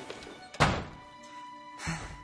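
Quiet orchestral film music with a single thud about half a second in and a lighter knock near the end.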